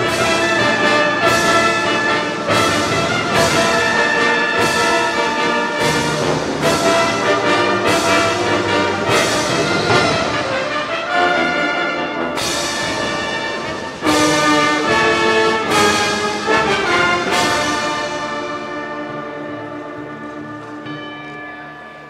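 Marching band brass section (trumpets, horns and low brass) playing full, sustained chords with accented attacks. A sudden loud entry comes about two-thirds of the way through, then the chord dies away in a long decrescendo near the end.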